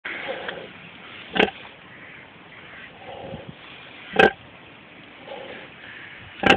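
A farrowing sow grunting as she lies in straw: soft low grunts near the start, a little after three seconds and again after five, with two short, much louder, sharper grunts about a second and a half in and just after four seconds.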